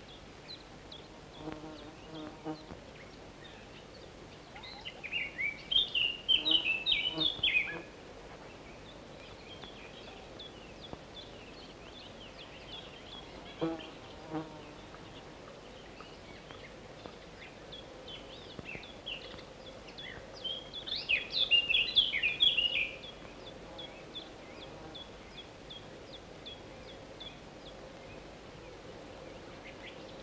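Small songbird calling in two bursts of rapid, high chirping notes, one a few seconds in and one about two-thirds of the way through. A faint short low buzz comes twice between them.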